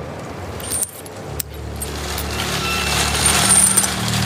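A few light metallic clicks and a jingle, then, about a second in, a scooter engine starts and runs with a steady low hum.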